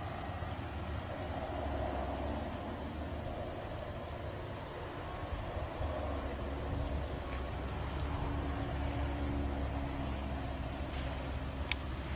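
Steady low outdoor rumble with a faint hum, with a few faint clicks near the end.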